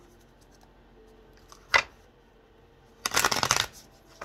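Tarot cards being shuffled by hand: a single sharp snap of cards about halfway through, then a quick riffle of the deck, a rapid run of flicks under a second long, near the end.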